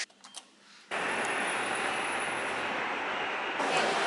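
A quiet moment with a few faint clicks, then about a second in a steady rushing, rumbling vehicle running noise starts, with a faint high whine over it.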